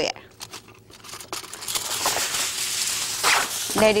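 Aluminium foil being pulled off its roll from the box and crinkling. It starts about a second and a half in, grows louder, and has a sharper crackle near the end.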